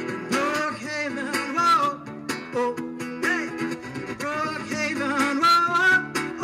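Live song: a man singing over his own strummed acoustic guitar, holding long sung notes.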